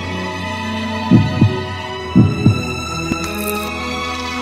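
Heartbeat sound effect: two double thumps (lub-dub) about a second apart, over soft sustained background music.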